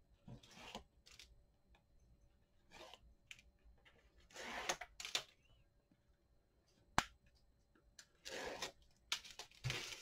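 Backing liner being peeled off strips of double-sided Scor-Tape on a paper-covered cardboard album spine: a series of short, faint papery rips and rustles, with one sharp click about seven seconds in.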